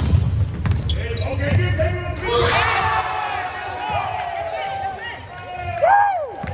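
Basketball bouncing on an indoor court as players dribble and run, with sneakers squeaking on the floor and players shouting; a sharp squeak near the end is the loudest sound.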